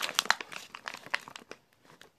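Close crinkling and crackling of something being handled: a dense run of small crackles in the first second, thinning to a few scattered clicks.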